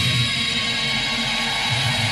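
Heavy metal band playing live: dense distorted electric guitars over drums, a steady wall of sound at full volume.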